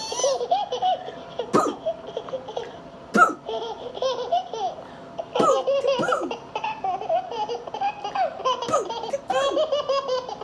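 A woman laughing and giggling in high-pitched, wavering runs, with a few sharp smacks or clicks in between.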